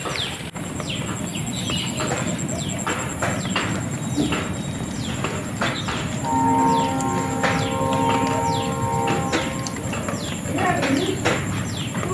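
Young chickens peeping over and over with short calls that fall in pitch while they feed on scattered grain. A steady humming tone joins in from about six to nine seconds in.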